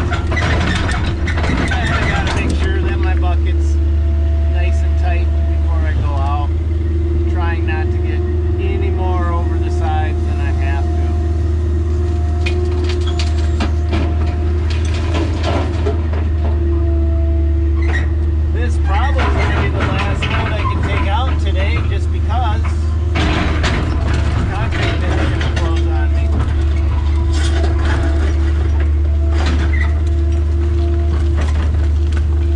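Kobelco excavator's diesel engine running steadily under load, heard from inside the cab, with hydraulic whine rising and falling as the boom and bucket move. Scattered clanks and scrapes come from the bucket working broken concrete and dirt.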